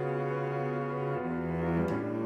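Cello playing sustained low bowed notes in a contemporary piece, stepping down to a lower note just past halfway, with a brief sharp attack near the end.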